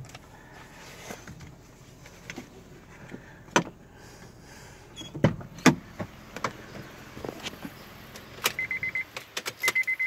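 Car cabin sounds: a faint steady hum with scattered clicks and knocks of handling inside the car, then near the end a rapid electronic warning chime beeping in two short runs as the driver's door opens.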